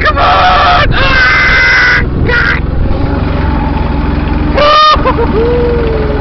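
Several loud, high-pitched whooping shouts, one held about a second, over the steady low rumble of a golf buggy driving through loose beach sand, just after it has come free of being stuck.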